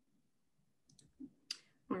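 Quiet room tone broken by a few faint short clicks about a second in and a brief hiss, then a voice starting to speak at the very end.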